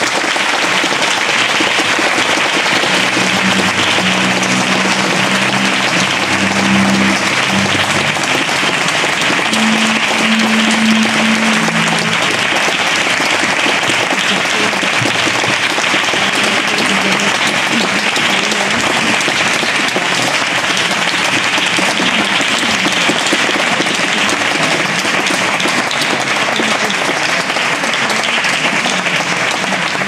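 Audience applause, a steady dense clapping that holds at the same level throughout.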